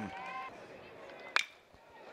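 Faint ballpark background, then a single sharp crack about 1.4 s in: a bat meeting a pitched baseball, the contact that starts a ground-ball double play.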